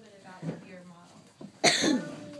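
A single loud, close cough near the end, over faint voices in the room.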